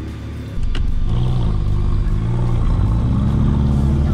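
Jaguar F-Type's engine running at low revs, its pitch rising and falling, while the car reverses back for another launch. A single sharp click comes just after half a second in.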